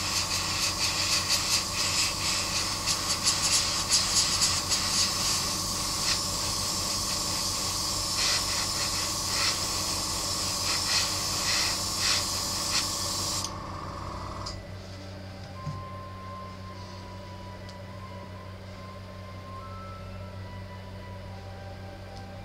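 Airbrush spraying paint in a steady hiss broken by short spurts, which cuts off suddenly about two-thirds of the way through. A low steady hum goes on after it.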